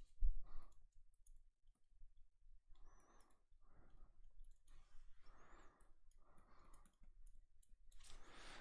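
Stylus writing on a tablet screen: a series of short tapping and scratching strokes as words and figures are written, with a low thump just after the start.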